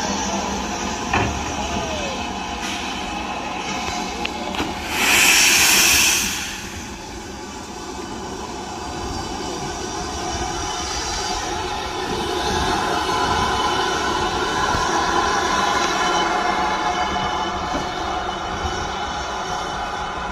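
Southern Railway U class 2-6-0 steam locomotive No. 31806 moving slowly over pointwork. About five seconds in there is a loud hiss of steam lasting a second and a half.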